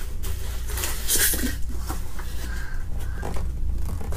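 Plastic packing material and cardboard rustling and crinkling as a boxed figure is handled and lifted out of a cardboard shipping box, with a louder crinkle about a second in and a few light knocks. A steady low hum runs underneath.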